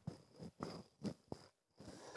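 Near quiet, with three or four faint short clicks spread across the pause.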